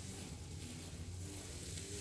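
Faint, steady outdoor background noise with a low hum underneath and no distinct event.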